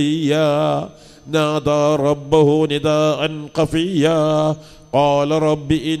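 A man chanting a Quranic verse in melodic recitation (tilawa), his voice held on long, wavering, ornamented phrases, with short breath pauses about a second in and near five seconds.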